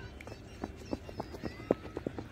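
Running footsteps of a cricket bowler's run-up on a concrete strip. The steps come about three to four a second and grow louder as the bowler nears.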